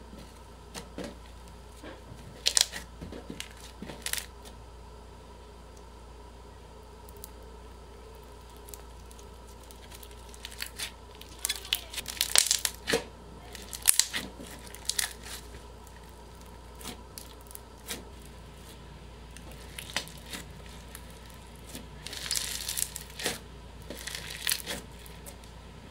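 Slime being squished and pressed by hand, with bursts of crackling and popping from the foam-bead slime. Quieter stretches fall between the bursts.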